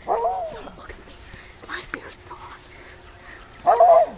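A dog barking and whining: a short arching call just after the start, then a louder call near the end.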